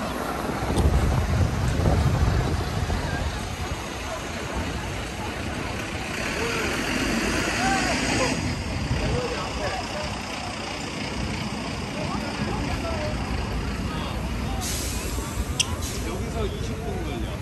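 City street traffic, with a heavy vehicle's engine rumbling low and loud in the first few seconds and passers-by talking. A hiss stops abruptly about eight seconds in, and there is a sharp click near the end.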